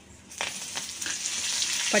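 Hot oil in a kadai sizzling as fresh curry leaves and coriander are dropped into the spice tempering, starting suddenly about a third of a second in and keeping up steadily.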